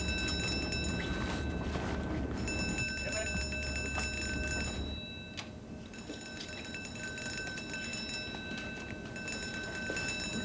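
Ship's alarm bell ringing steadily, the signal for the crew to go to their emergency stations, with brief breaks about five and nine seconds in.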